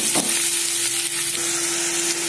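Chopped onions and green chillies sizzling in hot oil in a nonstick frying pan, just after being tipped in: a steady, dense hiss, with a faint steady hum underneath.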